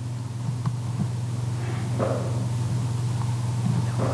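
Steady low electrical hum, as from a public-address system, with a few faint short sounds on top.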